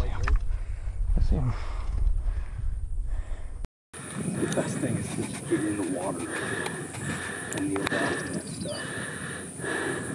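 Wind rumbling on the microphone under low, hushed voices. The sound drops out for a moment a few seconds in. It comes back without the wind rumble: hushed voices over quiet open-field ambience.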